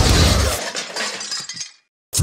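A sudden crash, followed by scattered clinking that dies away into silence shortly before the end, like a shattering sound effect.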